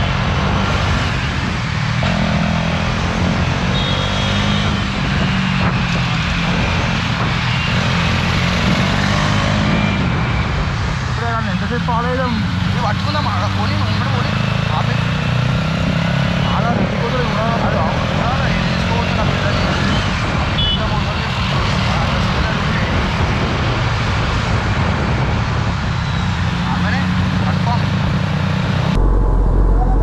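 Motorcycle engine running steadily while riding through city traffic, with the noise of surrounding cars and scooters.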